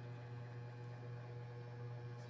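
A steady low hum with faint background noise.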